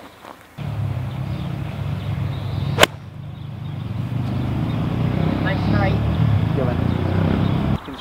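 A golf wedge striking the ball on a full stock wedge shot: one sharp crack about three seconds in, over a steady low rumble that starts just after the beginning and cuts off near the end.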